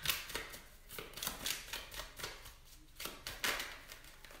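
A tarot deck being shuffled by hand: a fast, uneven run of soft papery card flicks.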